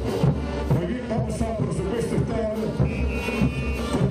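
Brass band playing a morenada: sustained brass melody over a steady bass-drum and cymbal beat of about two strokes a second.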